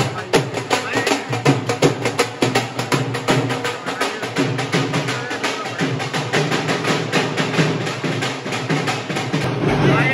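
Dhol drums, double-headed barrel drums played with sticks, beating a fast, continuous rhythm, with voices in the background.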